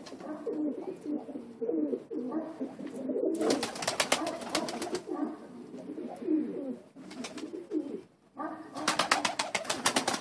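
Several domestic pigeons cooing steadily. Two bursts of rapid wingbeats break in, one about a third of the way in and another near the end, as birds take off or flutter down.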